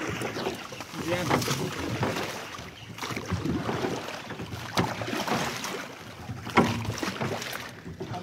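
Wooden oars dipping into and splashing through water as a small boat is rowed, with a few sharp knocks, about three in all.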